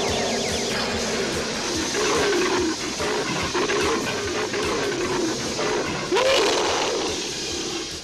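Dramatic cartoon transformation music with a big cat's roar over it: Cringer becoming Battle Cat. The loudest moment comes about six seconds in.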